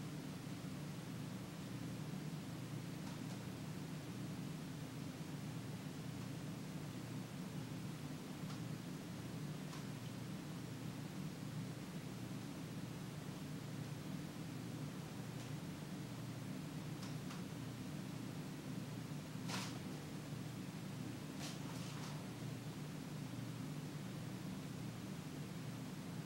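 Quiet room tone: a steady low hum, with a few faint, brief clicks scattered through, the clearest about twenty seconds in.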